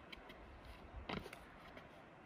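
Very quiet outdoor background with a few faint clicks and a short soft noise about a second in.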